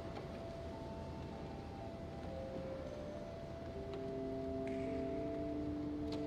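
Pipe organ playing quietly in sustained held notes: a high line first, joined about four seconds in by lower notes that build into a chord.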